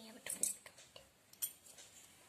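Light clinks of a tiny steel spoon against a miniature steel bowl and plate: a quick pair about half a second in and another around a second and a half.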